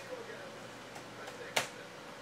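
A single sharp click about one and a half seconds in, over low room noise with a faint steady hum.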